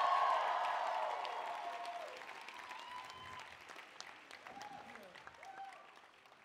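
Large audience applauding, loudest at first and dying down over several seconds.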